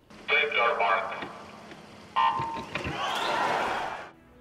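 An official calls the swimmers to their marks over the public address. About two seconds in, the electronic start signal sounds a steady beep, followed by swelling crowd noise and splashing as the race starts.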